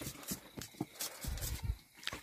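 An open wood fire crackling with irregular light pops and clicks, with a few dull thumps in the second half.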